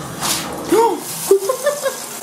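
Shower running after the valve is turned on: a strong spray of water hissing from the shower head onto the tub and tile. A woman's short wordless exclamations sound over it twice, around the middle.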